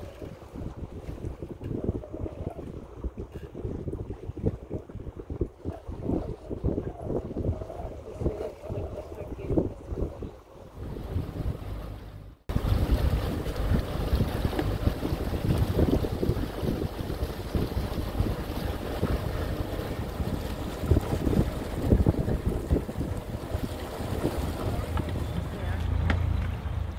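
Wind buffeting the microphone aboard a sailboat under way, in uneven gusts. About halfway through the noise jumps suddenly to a louder, fuller rush.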